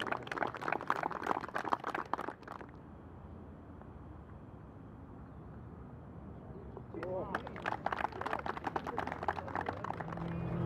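Indistinct voices talking in two stretches, one at the start and one from about seven seconds in, with a quieter gap between.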